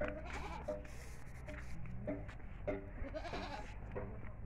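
Several short animal calls in quick succession, over a low steady hum.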